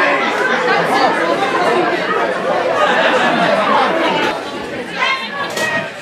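Many voices talking and calling over one another in a jumble of chatter, with no single speaker standing out.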